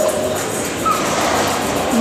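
Steady background noise of a crowd in a large hall, with faint music.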